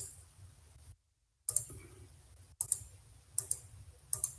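Computer mouse clicks picked up by the presenter's microphone over a video call: several short sharp clicks, some in quick pairs, with the call audio dropping out completely for about half a second early on.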